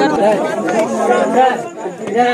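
Men talking over one another, voices close to the microphone.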